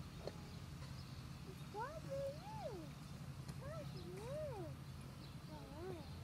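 A high, wordless voice calling in pitch glides that rise and fall: two calls of about a second each in the middle and a shorter one near the end, over a steady low hum.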